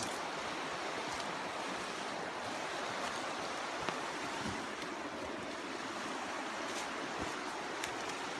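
Steady rushing of a stream of running water, even and unchanging throughout, with a few faint clicks.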